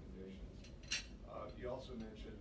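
A sharp clink about a second in, over faint background talk.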